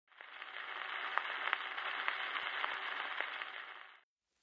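Gramophone record surface noise: a steady hiss with scattered crackles and clicks as the needle runs in the groove. It fades in just after the start and fades out near the end.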